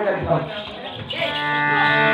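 A voice trails off, then about a second in a harmonium comes in, holding a steady reedy chord for the accompaniment of the folk-drama song.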